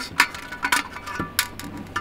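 A few light clicks and taps as a circuit board is slid into its metal mounting bracket, about five in two seconds.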